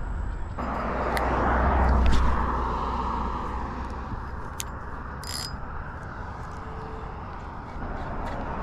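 A car passing on a nearby road: a broad tyre-and-engine rush that swells about two seconds in and then slowly fades away. A few short clicks are scattered through it.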